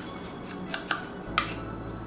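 Three light clinks against a glass mixing bowl in under a second, the last two ringing briefly, as dry yeast is added to the flour.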